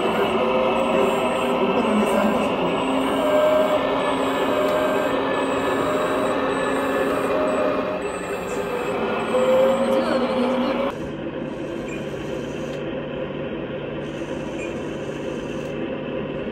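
Background music for about the first eleven seconds, which stops abruptly and leaves a quieter steady low hum.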